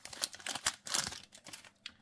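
Foil Yu-Gi-Oh! booster pack wrapper crinkling as it is torn open by hand, a rapid run of small crackles that dies away near the end.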